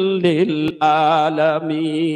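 A male preacher chanting his sermon in a sung, melodic style through a public-address microphone. He holds long, wavering notes with a strong echo, with a short break about a third of the way through.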